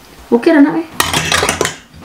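Metal cutlery clattering against a stainless steel pot, with a quick run of sharp clinks about a second in.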